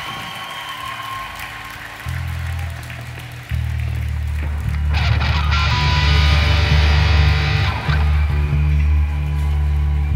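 Live rock band's electric guitars playing a song intro without drums: held low notes come in about two seconds in and get louder at about three and a half seconds, with a brighter upper layer from about five to eight seconds.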